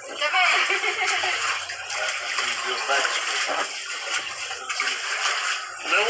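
Water splashing and sloshing in an inflatable kiddie pool as someone climbs in and stands in it, with voices over it near the start.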